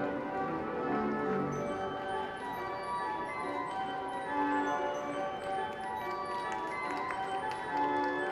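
The Wanamaker pipe organ playing sustained chords, with many short, high bell-like tones ringing over them.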